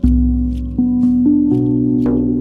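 A deep shaman drum beat together with a ringing note on a RAV steel tongue drum in B Celtic double ding, followed by three more tongue drum notes struck in turn about a second in, all left ringing.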